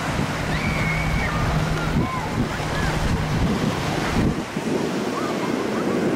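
Wind noise on the microphone over a wash of surf, with faint distant shouts and voices from people on the beach. A low steady hum runs under it for the first three seconds or so, then stops.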